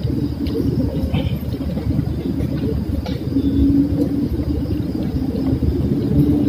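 A steady low rumble, with a few faint clicks over it.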